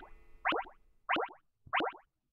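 Cartoon-style pop sound effects, one quick little pop cluster per beat, three times at an even pace of about 0.65 s apart. They mark the beats of a nine-beat conducting pattern.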